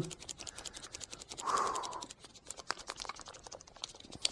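A plastic pouch of Xtire tyre sealant shaken hard by hand to mix the liquid before it goes into the tyre, making a fast, even run of crinkly ticks. A louder brief swish comes about a second and a half in.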